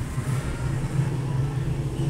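A steady low mechanical hum, as of a motor running, with a low rumble beneath it.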